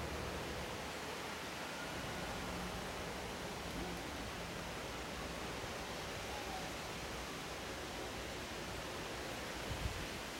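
Steady outdoor background noise, an even hiss and low rumble with no distinct events. There is a brief low bump near the end.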